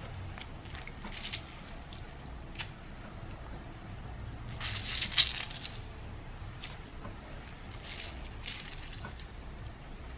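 A lemon squeezed by hand over the chicken in a slow cooker: faint wet squishing and drips of juice, loudest in one squeeze about five seconds in.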